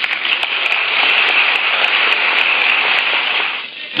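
A crowd applauding on an old archival speech recording. The applause builds, holds, and dies away shortly before the end, with scattered crackle clicks over it.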